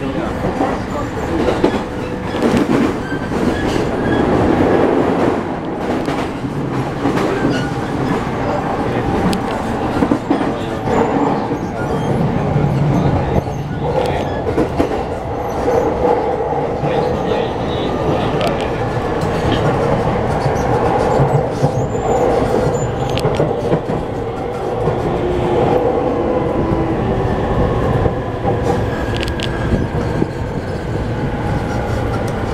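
Interior sound of a JR East E231 series suburban electric train with renewed traction equipment, running along the line. There is a steady hum from the traction equipment over the rumble of the car, with wheels clicking over rail joints.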